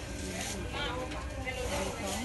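Indistinct voices talking in the background, with no clear words, over a steady low hum of room noise.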